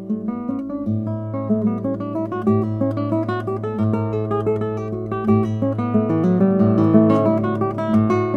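Michael Ritchie classical guitar played fingerstyle: a melody with chords over a low bass note that is struck again every second or so.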